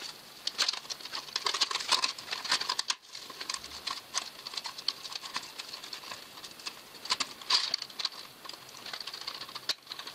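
Irregular crackling and scratching as a strip of denim and a thin zinc sheet ring are worked by hand around a stainless steel flue pipe. The crackling comes in a thick spell in the first few seconds and again near the middle.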